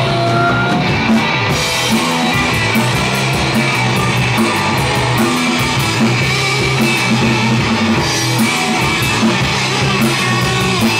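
Punk rock band playing live: loud distorted electric guitars driven by a Pearl drum kit, an instrumental stretch with no singing. The cymbals come in hard about a second and a half in and keep a steady beat.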